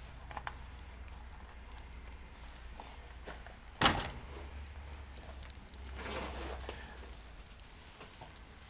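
Faint crackling of newspaper and pine twigs burning at the top of a top-lit updraft (TLUD) wood-gas stove, with one sharp click about four seconds in, over a low steady rumble.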